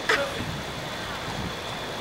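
Steady background noise, an even hiss with faint voices, after a brief sound right at the start.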